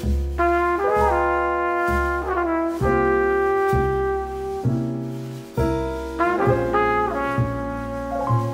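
Background music: a jazzy tune led by brass instruments over low bass notes, with the notes changing every half second or so.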